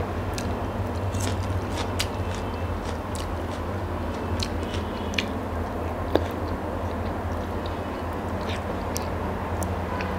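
Close-miked chewing and mouth sounds of a person eating a meal by hand: soft wet smacks and clicks scattered through, with a sharper click about six seconds in, over a steady low hum.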